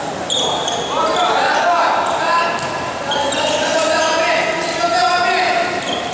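Basketball bouncing on a gym floor during a game, with players' shouts and calls over it, all echoing in a large hall.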